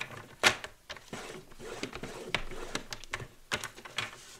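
Cardstock being slid and scored on a plastic scoring board: a string of sharp clicks and knocks, the loudest about half a second in, with paper scraping between them.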